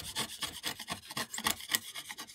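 Steel chisel paring waste from the recess of a softwood joint by hand, a quick irregular run of short scraping cuts through the wood fibres.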